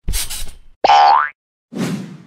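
Cartoon sound effects: a short noisy swish, then about a second in a quick rising springy tone like a cartoon boing, then another swish near the end.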